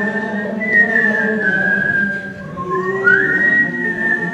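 A man whistling a melody of long held notes joined by short pitch slides, over acoustic guitar accompaniment.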